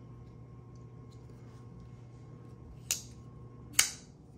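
Two sharp clicks from a Kubey Raven folding knife being handled, about three seconds in and a second apart, over a faint steady hum.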